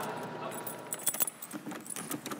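Keys jingling and clicking against a door lock as a door is unlocked: a short cluster of sharp metallic clicks and jingles between about half a second and a second and a half in.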